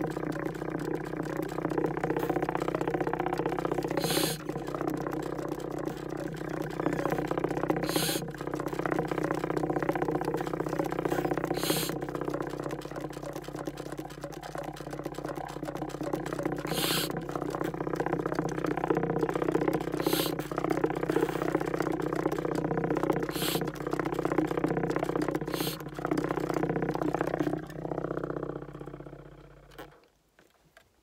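Soprano saxophone fitted with plastic tube extensions, played in an extreme low range: long held, low droning notes, broken every three to four seconds by a brief hiss. The playing fades out near the end.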